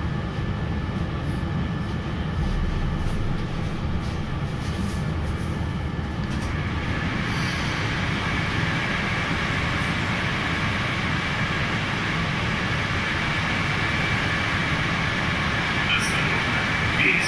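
Metro train car rumbling steadily as it slows to a stop at a station. About halfway through, a steady high-pitched squeal joins the rumble.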